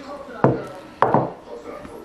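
Two hard knocks on a wooden cutting board, about half a second apart, as a hot glass loaf pan is turned out and a freshly baked loaf of bread is handled.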